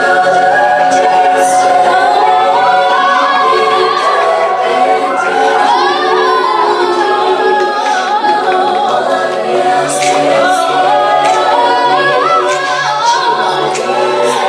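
A group of voices singing together without clear instruments, in long held notes that slide up and down in pitch.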